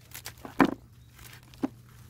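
Peanut pods being stripped from a freshly dug plant's roots and dropped into a plastic basin: a few short knocks with light rustling of the roots.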